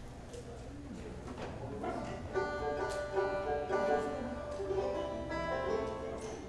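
A banjo picked briefly between songs: a short run of ringing notes starts about two seconds in and stops just before the end, over a low steady hum.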